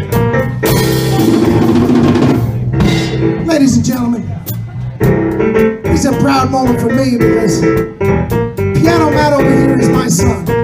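A live electric blues band playing a steady vamp on drum kit, electric guitars and bass. About half a second in comes a dense wash lasting a couple of seconds, followed by bending lead notes over the groove.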